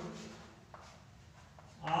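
A man's voice trails off on a long drawn-out syllable. A quiet pause follows, with two faint taps of chalk on a blackboard about a second in, and the voice starts again just before the end.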